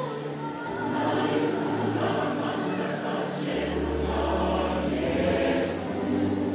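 Large mixed church choir singing a gospel song in harmony, many voices blended, with a low note held for about two seconds in the second half.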